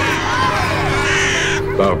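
A crowd of children shouting and shrieking all at once over a low, steady music drone. A loud shriek rises out of the crowd about a second in, and the crowd cuts off just before a man's voice begins.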